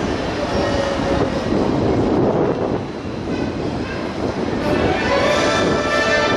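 Water rushing and splashing as an orca swims through the pool carrying a trainer standing on its head. Show music swells in near the end.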